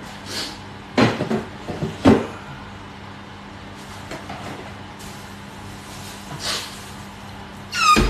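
Kitchenware clattering: two sharp knocks about a second apart, over a low steady hum, with a brief high squeal near the end.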